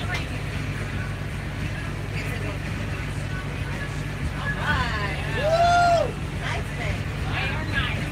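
Steady low hum of a moving bus's engine and road noise inside the cabin, under faint chatter from passengers. About five seconds in, one voice calls out in a single drawn-out note that rises and falls.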